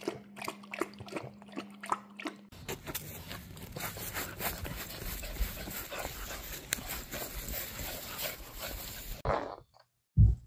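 A mastiff puppy lapping water from a bowl, a quick run of wet laps at about three to four a second over a steady low hum. After a few seconds this gives way to a rougher, steady rushing noise with low rumbles, like wind on the microphone, and scattered soft ticks while the puppy noses about in the grass.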